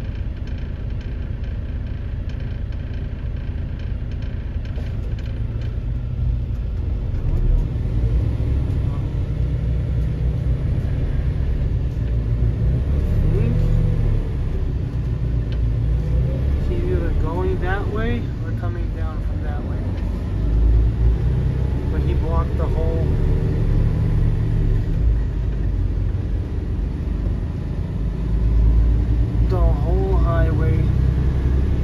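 Semi truck's diesel engine running steadily as the truck rolls slowly, a low rumble heard from inside the cab that grows a little louder after the first several seconds.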